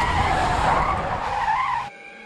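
Car tires screeching under hard braking: a loud, wavering squeal over road noise that cuts off suddenly near the end.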